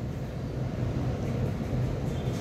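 Steady low background rumble with no distinct events: room noise picked up by the microphone.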